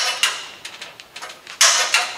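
Hand-lever tube bender clamped in a vise, bending steel conduit: metal scraping and creaking as the tube is drawn around the die, in two short bursts with a louder one near the end.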